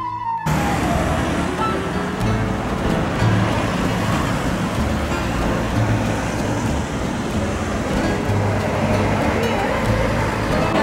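Busy city-street traffic noise from passing cars and buses, starting about half a second in, with background music running underneath.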